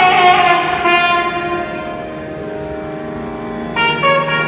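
Nagaswaram, the South Indian double-reed wind instrument, playing a phrase that slides down into one long held note over a steady drone. A new phrase starts near the end.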